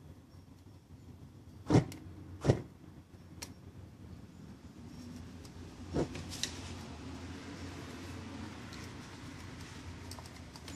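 Two sharp thumps about two seconds in. About six seconds in, a homemade soda-can alcohol stove burning acetone nail polish remover flares up with another sharp burst, and after it comes a low, steady burning noise.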